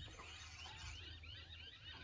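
Faint bird chirping: a quick run of small high notes repeating several times a second, over a low steady hum.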